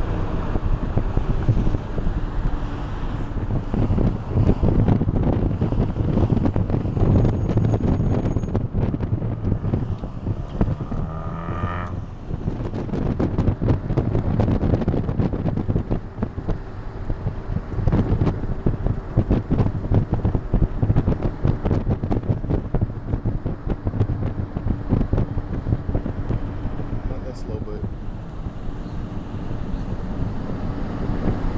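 Road and engine rumble of a moving vehicle with wind buffeting the microphone, with a short rising whine about twelve seconds in.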